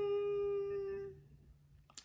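A woman's drawn-out, steady hum ("hmm") held for about a second, trailing off into near silence.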